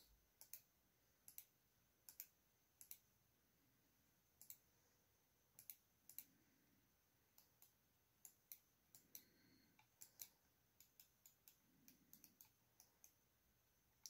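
Faint, scattered clicks of a computer mouse, single or in quick pairs about every second.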